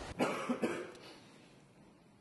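A person coughing, two or three quick coughs in the first second, then only low room noise.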